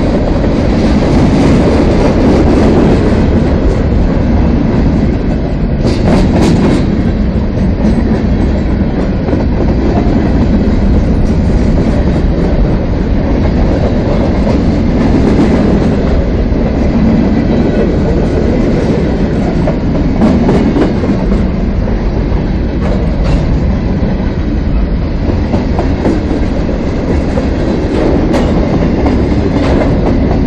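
Freight train of covered hopper cars passing close by: a steady loud rumble and clatter of steel wheels rolling over the rails, with a brief sharp noise about six seconds in.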